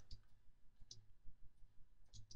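Two faint computer mouse clicks, one at the start and one about a second in, over near-silent room tone.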